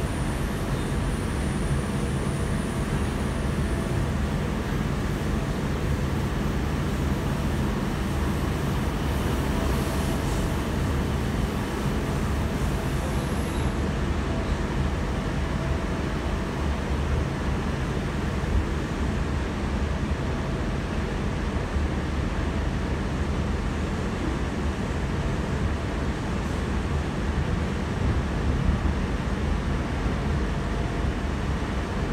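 Steady running noise inside a Sydney Trains K-set double-deck electric train travelling at speed: wheels on the rails under a constant low rumble, unchanging throughout.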